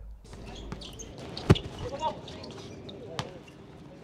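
A basketball striking hard on an outdoor court: one sharp, loud hit about a second and a half in and a lighter one a little after three seconds. Players' voices call faintly in the background.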